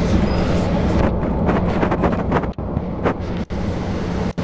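Inside a passenger train running at speed: a loud, steady rumble and rattle of the car on the rails. The sound cuts out briefly twice in the second half.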